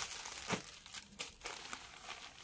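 Rustling and crinkling of a silk suit's fabric being handled and folded, in irregular crackles with a sharper one about half a second in.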